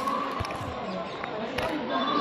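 Faint background voices of people, with no clear words, and one dull thump about half a second in.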